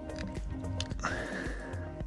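Background music with steady held tones over a low pulse.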